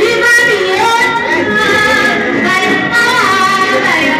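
Music with a woman singing in long held notes that glide from one pitch to the next.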